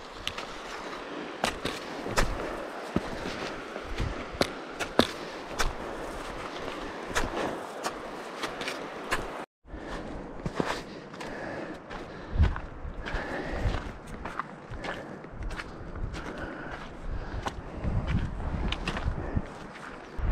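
A hiker's footsteps crunching across snow, with sharp taps in between. There is an abrupt cut about nine and a half seconds in, after which the footsteps go on over a stony dirt trail.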